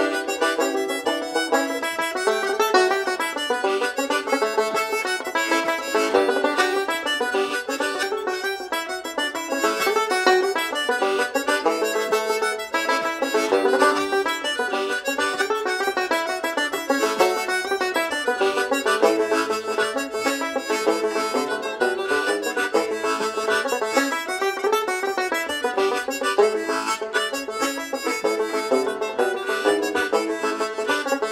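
Banjo and harmonica playing an Irish slip jig together, a continuous run of quick, steady notes.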